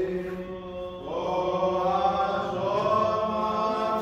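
Voices chanting an Orthodox hymn in long, slowly sliding held notes over a steady low drone; the chant thins about half a second in and swells again after about a second.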